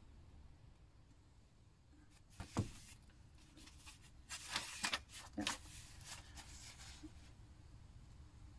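Paper magazine handled and its pages turned: a single knock about two and a half seconds in, then brief rustles of paper in the middle.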